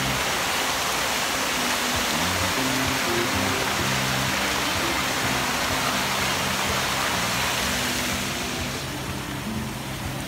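Large ornamental fountain with many jets splashing steadily, easing off a little near the end. Music with low notes plays underneath.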